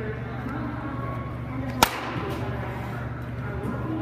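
A single sharp crack of a wooden baseball bat hitting a tossed ball, about two seconds in.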